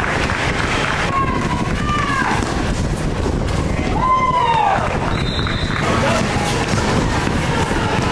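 Basketball sneakers squeaking on an indoor court as players run and cut, several short rising-and-falling squeaks, over steady spectator chatter and the noise of play in a large hall.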